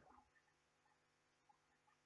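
Near silence: a pause in the recitation, only faint background hiss.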